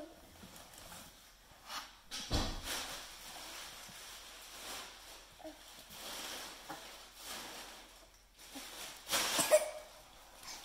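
A baby shifting about and sitting down on a hard tile floor: soft scuffs, with one heavy thump about two seconds in and a louder scuffling burst near the end as he turns to crawl.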